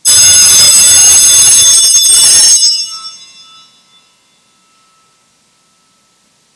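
Altar bells (a cluster of small hand bells) shaken loudly for about two and a half seconds, then stopped, their ringing fading over the next second or so. The sound marks the priest's elevation of the chalice at Communion in a Catholic Mass.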